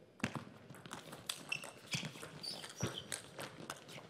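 A table tennis rally: the celluloid-type plastic ball clicking sharply off rackets and table every third to half a second, in an irregular back-and-forth rhythm. The players' footwork can be heard between strokes, with a few short squeaks.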